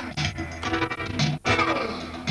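Live band music with no singing: electronic keyboard played with both hands, together with electric guitar, with a brief drop about two-thirds of the way through.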